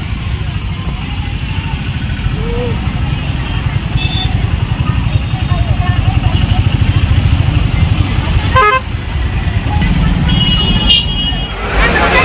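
Busy roadside ambience: a steady low rumble of road traffic under crowd voices, with a few short vehicle horn toots, the loudest about ten and a half seconds in.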